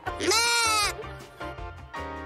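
A goat giving one loud bleat, rising and then falling in pitch, lasting well under a second near the start.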